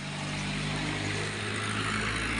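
Tractor diesel engine running steadily at idle, a low even hum, with a hiss above it that slowly grows louder.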